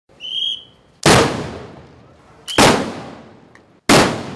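Three shots from bacamartes, the big muzzle-loading black-powder blunderbusses of the bacamarteiro groups, fired one after another about a second and a half apart, each a sharp blast that dies away over about a second. A short high whistle sounds just before the first shot.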